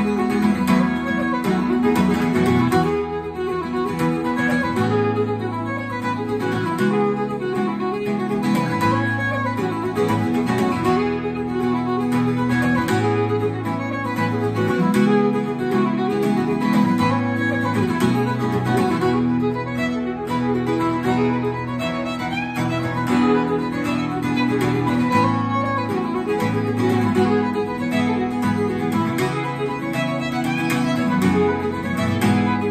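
Fiddle playing a reel, with an acoustic guitar strumming chord accompaniment underneath.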